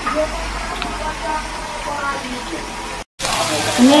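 Steady hiss and hum of food cooking on a kitchen stove, with faint voices. It breaks off about three seconds in and gives way to a brighter hiss of food sizzling on a tabletop gas grill plate.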